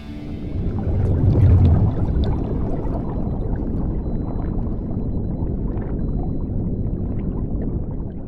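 Underwater bubbling sound effect: a deep rumble with gurgling and bubble crackle that swells about a second in, then holds steady.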